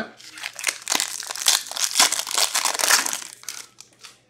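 Foil wrapper of an Upper Deck hockey card pack crinkling as it is torn open and the cards are pulled out, a rapid run of sharp crackles that stops shortly before the end.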